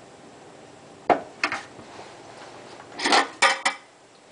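Metal clanks of a screwdriver knocking against the mounting-ring ears of a Badger garbage disposal as it is levered to twist the stuck unit loose: one sharp clank about a second in, two lighter ones just after, and a cluster of clanks near the end.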